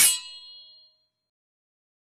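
A metallic clang sound effect that strikes right at the start and rings out, dying away within under a second, followed by dead silence.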